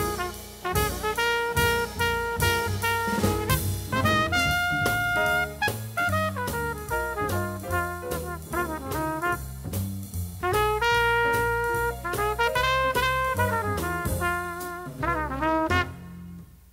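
Trumpet-led jazz quartet (trumpet, piano, string bass and drum kit) playing the closing bars of a hard-bop tune. The trumpet plays fast melodic lines over the rhythm section, and the band stops together at the very end.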